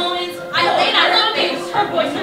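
A group of singers performing a musical-theatre song, with a strong vocal entry about half a second in.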